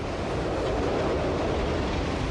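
Steady low rumble of an avalanche, a mass of snow sliding down a mountainside; it swells slightly early on and then holds even.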